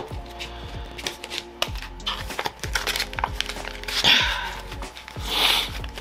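Soft background music under rustling and clicking from cash bills and a clear plastic zip envelope being handled. Louder plastic crinkles come about four seconds in and again near the end.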